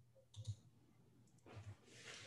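Faint computer mouse clicks in near silence: two quick clicks about half a second in, and fainter ones near the end.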